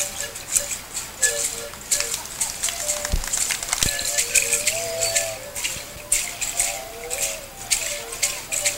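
Music of hand rattles shaken in a repeating pulse, with a high wavering melody line over them.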